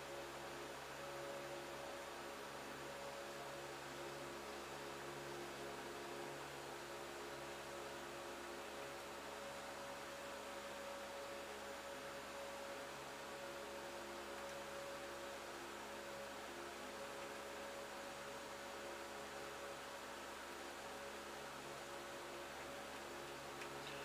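A steady, faint electrical hum with several fixed tones over a soft hiss, unchanging throughout.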